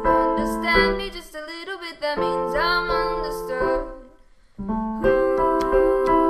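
Piano playing slow sustained chords for an original song, with a woman's voice singing a wordless, wavering line over it in the first half. The music stops briefly about two-thirds of the way in, then the piano comes back in with fresh chords.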